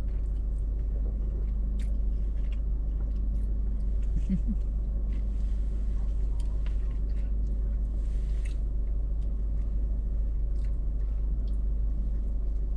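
A car engine idling with a steady low rumble heard from inside the cabin, under quiet chewing and faint scattered clicks of chopsticks on a plastic sushi tray.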